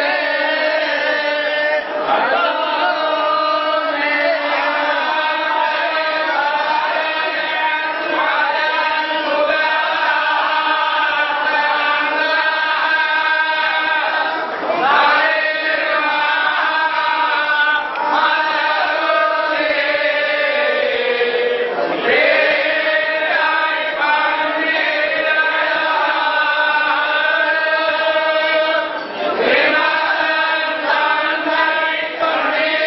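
A large group of men chanting together in unison, many voices blended into one continuous, steady chant with gently shifting pitch.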